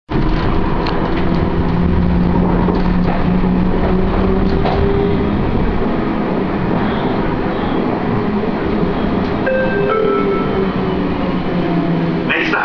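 Siemens Combino Classic low-floor tram running, heard from inside the passenger cabin: a steady rumble of wheels on rail and running gear, with a whine from the electric drive that steps in pitch several times.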